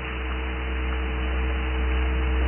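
Steady electrical mains hum with faint steady tones and an even hiss from the sermon recording's sound system, slowly getting louder through the pause.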